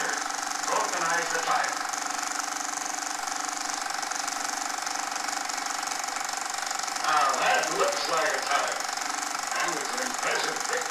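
Indistinct voices, heard about a second in and again from about seven seconds in, over the steady hum and hiss of an old film soundtrack.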